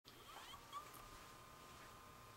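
Near silence: room tone with a faint steady high hum, and a few faint short chirps in the first second.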